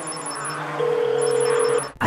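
Electronic warning beeps from a drone's display: two quick runs of high beeps, with a sustained tone sounding in the second half over a low steady drone of sound. The red battery icon on the feed marks it as a low-battery alarm.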